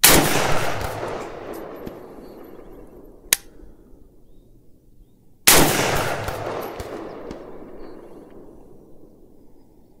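Two rifle shots from a Palmetto State Army PSAK-47 chambered in 7.62×39, about five and a half seconds apart, each followed by a long echoing tail. A single short, sharp click comes between them.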